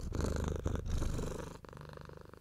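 Domestic cat purring, a steady low rumble that eases off a little in the last half-second.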